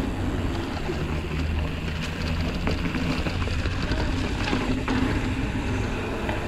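Steady wind noise on the camera microphone mixed with tyre rumble as a 29-inch hardtail mountain bike rolls over brick paving, with a few light clicks and rattles from the bike.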